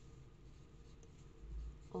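Faint scratching of a pen writing on paper, with a soft low bump about a second and a half in.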